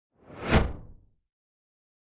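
A single whoosh sound effect for an animated logo reveal. It swells up to a peak about half a second in and fades out by about a second.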